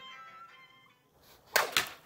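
Regal Makaku Damascus steel katana swung through the air: a short, sharp whoosh about one and a half seconds in. Before it, a musical note fades out.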